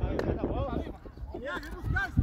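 Several men's voices shouting and calling to each other across a football pitch, with one sharp knock just after the start.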